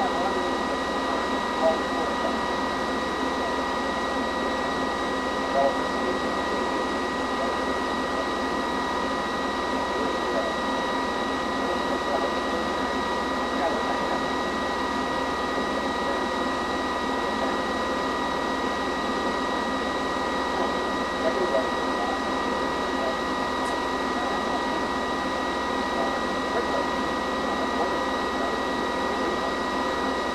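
Ampex VR-1200-C two-inch quadruplex videotape recorder running in playback: a steady whine from its spinning headwheel, with several fixed tones over an even machine hiss.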